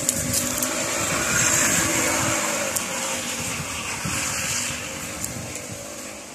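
Wind on the microphone, with the rustle and crunch of footsteps through dry leaf litter and a few light clicks. The noise swells about a second and a half in and eases toward the end.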